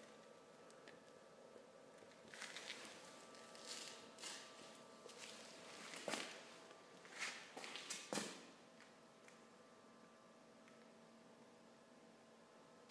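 Quiet, steady hum of a small computer fan blowing air into a pellet rocket stove. A few soft footsteps on a concrete floor fall in the middle few seconds.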